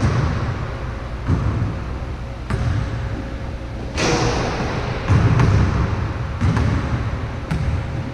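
Basketball bouncing during one-on-one play: a series of separate thudding bounces, roughly a second apart, over a steady low rumble.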